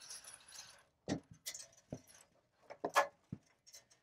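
Alarm wiring and a plastic cellular communicator housing being handled: a brief rustle, then several scattered light clicks and taps, the loudest about three seconds in.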